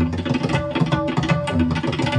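Two tabla sets played together at a fast pace: dense, rapid strokes on the tuned right-hand drums ring over deep bass strokes from the left-hand drums.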